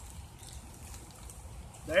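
Quiet outdoor background: a faint, steady low rumble and hiss with no distinct event, until a voice starts right at the end.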